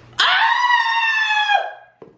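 A person screaming: one loud, high-pitched scream that starts a moment in and is held for about a second and a half, its pitch sinking a little as it fades out.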